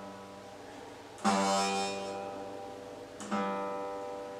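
Steel-string acoustic guitar fitted with a capo, strummed twice, about a second in and again a little after three seconds, each chord ringing out and fading. The capo leaves a slight buzz on the E string that the player can't get rid of.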